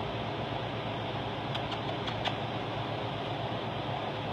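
Steady mechanical whir with a low hum, as of a fan running, with a few faint clicks about two seconds in.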